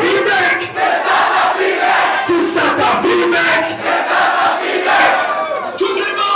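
Crowd shouting along with a man shouting into a microphone, loud and rhythmic.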